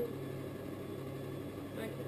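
Electric potter's wheel motor running with a steady low hum while a clay cylinder is thrown on it.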